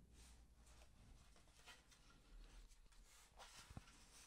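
Near silence: room tone, with a few faint short clicks near the end.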